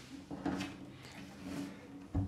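A cello being handled and turned on its endpin: soft knocks and rubbing from its wooden body, once about half a second in and again near the end.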